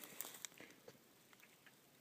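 Near silence, with a few faint clicks in the first half second.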